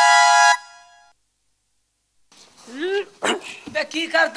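Several short dog-like barks and yelps, each arching up and down in pitch, coming in quick succession from past halfway. Before them a synth music cue ends about half a second in, followed by a second of silence.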